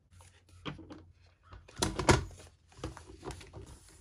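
Stiff embossed paper and a plastic paper trimmer being handled on a tabletop: rustling with several light knocks, the loudest about two seconds in.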